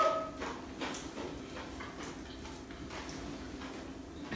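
Faint scattered clicks and rustles of fried chicken being pulled apart and eaten by hand at a table, over a low steady hum.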